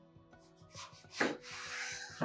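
Kitchen knife slicing through an eggplant and scraping across a wooden cutting board: a sharp stroke about a second in, then a longer scraping stroke.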